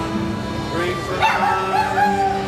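Acoustic guitar and piano accordion playing together, the accordion holding steady chords. Just after a second in, a short high wavering yelp-like call sounds over the music.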